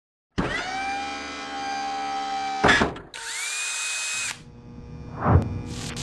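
Animated-intro sound effects: a power-tool-like whir that rises in pitch and then holds for about two seconds, a sharp hit, a second, shorter rising whir, then a swelling whoosh near the end.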